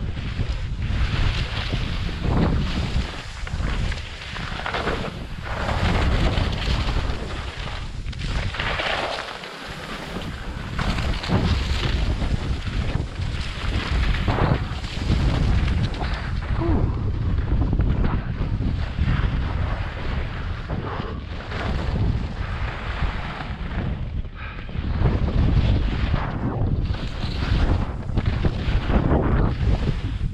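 Wind rushing over the microphone of a skier's camera during a fast downhill run, with the hiss and scrape of skis on chopped-up snow surging and easing through the turns.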